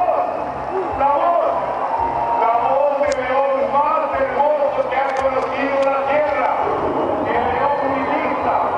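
A voice with music behind it, played over a stadium sound system during the show. A few sharp clicks come about three seconds in and again around five to six seconds.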